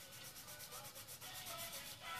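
A paper blending stump rubbing graphite across drawing paper in quick, short back-and-forth strokes.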